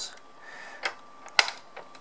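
Sharp plastic clicks, two of them, the second louder, as the side equipment hatch of a Bruder Scania toy fire truck is snapped shut.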